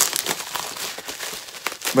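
Bubble wrap crinkling and crackling as it is handled and pulled open, with irregular small crackles throughout.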